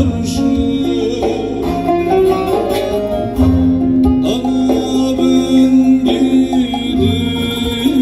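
Live Turkish folk music played through a PA system: a man sings long, bending notes, accompanied by plucked long-necked lutes (bağlama) and keyboard.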